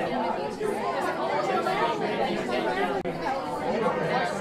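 Many voices chattering over one another in a steady babble: a noisy class talking among themselves.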